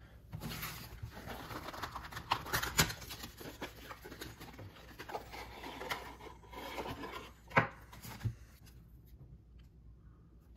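A stack of trading cards being lifted from a cardboard box and handled: soft rubbing and scattered light clicks and taps of cards against each other, with one sharper tap about three quarters of the way in, then quieter handling.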